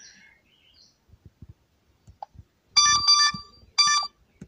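Loud, high-pitched electronic beeps: a quick run of short beeps about three seconds in, then one more near the end, after a few faint ticks.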